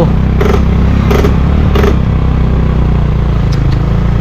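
Motorcycle engine running steadily, heard on board from the pillion seat. Three short rattles come in the first two seconds.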